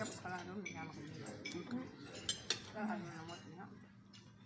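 Metal cutlery clinking against a ceramic dinner plate while someone eats, with two sharp clinks about two and a half seconds in.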